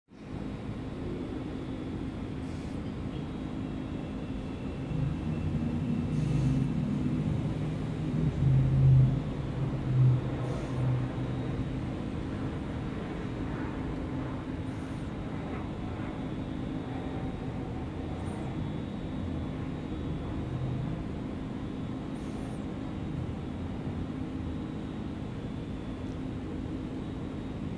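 Steady low mechanical hum with street traffic; a passing vehicle's rumble swells and fades between about five and eleven seconds in.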